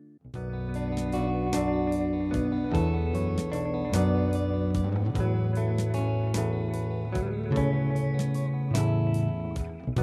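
Flamenco music with guitar, sustained low bass notes and frequent sharp percussive strikes, starting abruptly just after the start.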